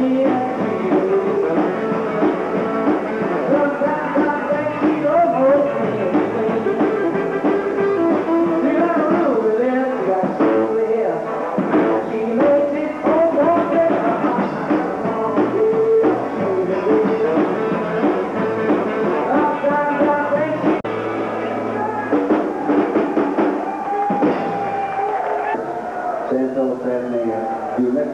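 Live rockabilly band playing: a man singing into a microphone over electric guitar and upright double bass.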